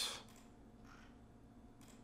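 Near silence: faint room tone just after a spoken word trails off.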